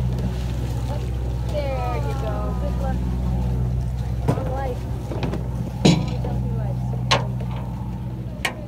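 A boat engine running steadily with a low hum, and a few sharp knocks, the loudest about six seconds in.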